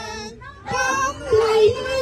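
Women singing a song together into a microphone, in long held notes with a short break about half a second in.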